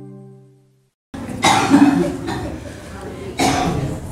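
The closing chord of an intro music jingle fades out. After a short silence a man coughs and clears his throat in two bouts, the second about two seconds after the first.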